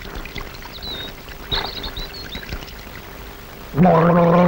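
Water pouring and splashing steadily, with a few faint high squeaks over it.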